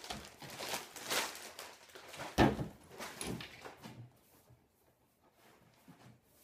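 Plastic wrapping rustling as it is pulled off a footstool cushion, then a sharp thump about two and a half seconds in and a smaller one a second later as the cushion is handled and set down on the footstool.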